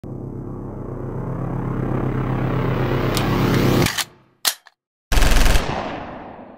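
Logo-intro sound effect: a rumbling riser with a fast rattling pulse swells for about four seconds and cuts off abruptly. Two short sharp hits and a silent gap follow, then a heavy boom that rings out.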